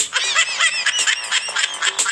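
Comic sound effect of quick, high-pitched squeaky chirps and honks over a clicking beat.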